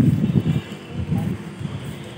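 Wind buffeting the phone's microphone: an uneven low rumble, strongest in the first half second.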